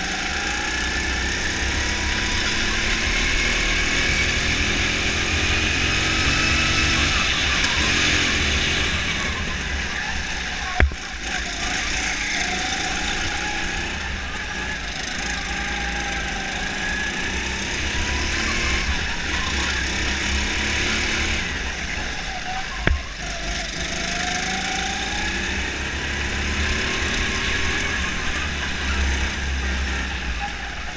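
Go-kart engine heard onboard, its pitch rising and falling as the kart accelerates out of corners and lifts off into them, over a heavy low rumble. Two sharp knocks stand out, about twelve seconds apart.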